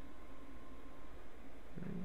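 Steady low electrical hum and faint hiss of the recording background, with a thin steady tone, then a short low voice sound near the end.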